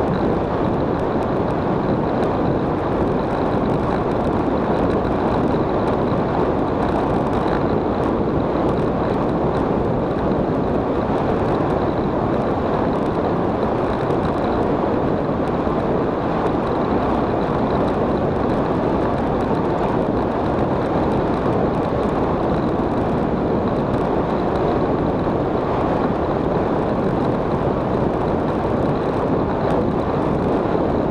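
Steady wind rush buffeting the camera microphone at speed on a fast downhill descent, an even roar that holds constant throughout.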